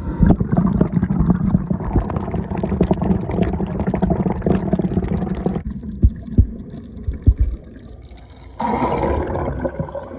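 Water sloshing and gurgling around a phone sealed in a waterproof case, picked up by the phone's own microphone through the case as it is moved about in and out of a sink of water. The sound drops away a little over halfway through, leaving a few knocks, then a second burst of splashing about a second long comes near the end.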